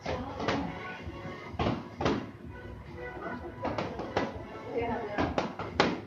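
Boxing-glove punches landing in irregular sharp smacks, about ten in all and some in quick pairs. Music and voices run underneath.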